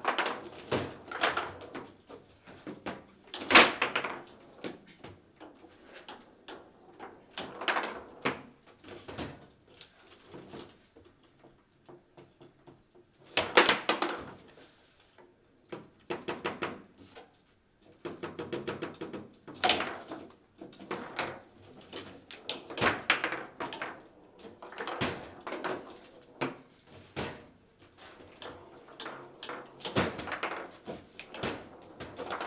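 Table football being played: irregular sharp clacks and knocks of the ball and the rod figures striking and rebounding on a foosball table, the strongest shots about 4, 14 and 20 seconds in.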